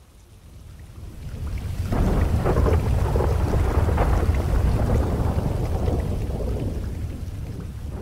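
A long roll of thunder over steady rain: the deep rumble swells over the first two seconds, holds for a few seconds, then slowly fades away.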